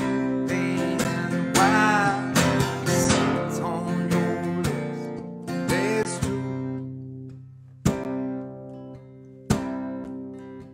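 Acoustic guitar strummed, with a man's singing voice over it in the first six seconds or so. After about seven seconds the playing thins to two single strummed chords that ring out and fade.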